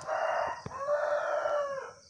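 A rooster crowing once: a short opening note, then a long drawn-out note that rises and falls away near the end.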